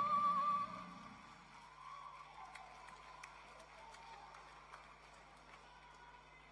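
A woman's held, wavering sung note with accompaniment fades out about half a second in. A faint low hum and a few scattered soft clicks follow.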